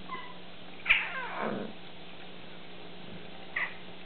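Bengal cat yowling: one loud call about a second in that slides down from high to low pitch, then a short high call near the end.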